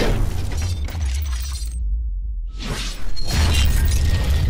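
Cinematic intro sound design for an animated logo: a heavy, steady deep bass under shattering, metallic hits and whooshes. The top end drops away for about a second in the middle, then a swelling whoosh rises into a loud hit about three seconds in.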